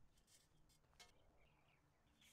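Near silence: faint outdoor background with a couple of faint clicks, one about a second in.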